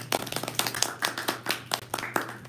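A small audience clapping, with many irregular overlapping hand claps.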